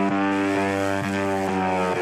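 Electronic dance music in a breakdown: a sustained synthesizer chord held steady, with faint regular ticks and no kick drum.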